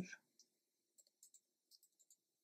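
Faint, scattered clicks of typing on a computer keyboard.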